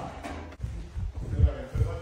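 Footsteps as several people walk off together, heard as a few dull low thuds, about three a second, the strongest about one and a half seconds in, with faint voices behind them.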